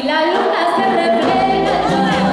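Live tropical dance band with voices singing. In the first second the bass and drums drop out, leaving mostly the voices, before the full band comes back in near the end.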